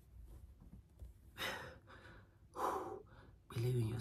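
A man breathing hard while doing push-ups: two loud, breathy exhales, about a second and a half in and again about a second later.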